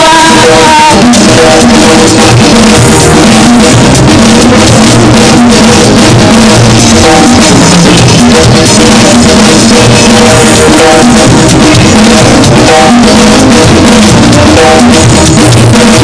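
Loud live praise-band music led by a drum kit with a steady beat, played without singing.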